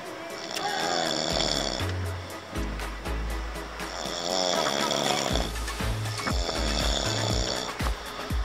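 A man snoring in slow, repeated breaths, over background music.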